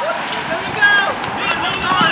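Electric 1/10-scale RC touring cars racing on asphalt: a thin, high-pitched motor whine rises in pitch as a car accelerates, over a steady noise.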